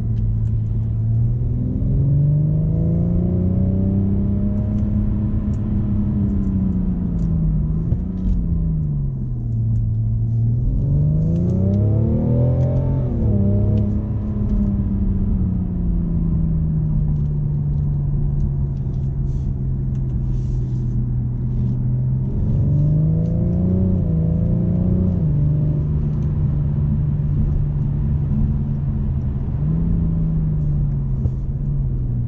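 BMW M550d's quad-turbo 3.0-litre straight-six diesel heard from inside the cabin under acceleration, its note rising and falling in pitch several times as the throttle is opened and eased, with a stretch of steady cruising in the middle. Low road and tyre rumble runs underneath.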